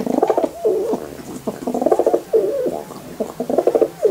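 Young male domestic pigeon cooing three times, each coo a rapid rolling flutter that ends in a falling note.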